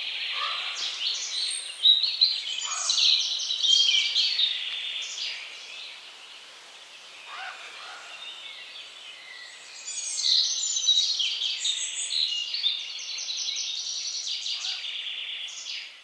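Songbirds singing in woodland: a dense run of rapid, high-pitched chirps and trills that swells during the first five seconds and again about ten seconds in. A few fainter, lower calls are scattered among them.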